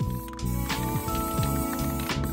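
Instrumental background music: held chords over a regular low beat.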